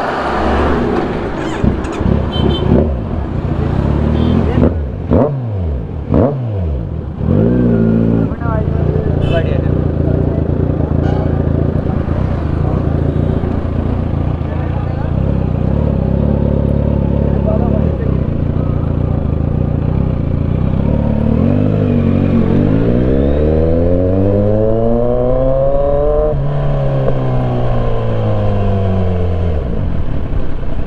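Kawasaki Z900 inline-four engine revved in several quick sharp blips in the first eight seconds, then running steadily. About twenty seconds in it accelerates, pitch climbing for about four seconds, then falling away as it eases off.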